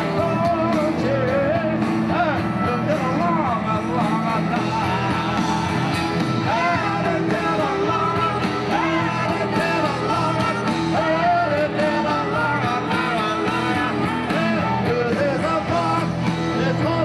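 Live rock band playing at a steady, full level, with drums, bass, guitars and keyboards and a lead melody sliding up and down in pitch over them.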